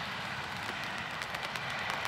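Steady outdoor background noise: an even hiss with faint scattered ticks and no clear single source.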